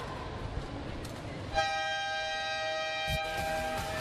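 Arena crowd noise, then about one and a half seconds in a loud, steady multi-tone electronic horn sounds for about two seconds and cuts off suddenly: the arena's buzzer signalling the end of a timeout.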